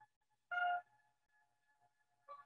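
Lambdoma harmonic keyboard holding a faint steady tone at the 852 Hz solfeggio frequency, with an overtone above it. A short, louder and brighter note sounds about half a second in.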